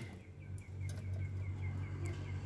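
A small bird chirping in a quick regular series, about four to five short high chirps a second, over a low steady hum that comes in about half a second in.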